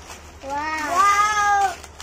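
A child's long, drawn-out vocal exclamation of excitement, like a stretched "wooow", starting about half a second in. Its pitch rises and then falls.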